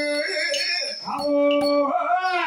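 Men's voices singing long, steady held notes in a Tamil folk song. One note fades just after the start, and another is held from about a second in until near the end.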